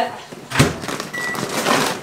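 A microwave oven door shut with a thunk about half a second in, followed by a short high beep and the rustle of a plastic grocery bag.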